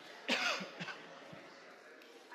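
A person coughs once, loudly and suddenly, with a couple of short catches after it, over the low murmur of a congregation greeting one another.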